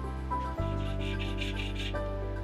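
Background music with a steady low bass. From about half a second in, a quick run of short hand-file strokes rasps across the edge of a small metal spacer, cutting a clearance arc.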